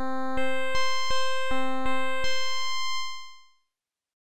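Software granular synthesizer tone from Padshop 2's granular oscillator playing the Multi Pulse sample with two grain streams, which puts it an octave up. A buzzy sustained note is re-triggered with a click about every 0.4 s, seven times, then dies away about three seconds in.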